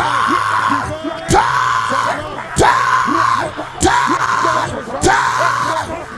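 A man's voice shouting a short, loud prayer cry again and again, about once every second and a bit, over a steady low note of background keyboard music.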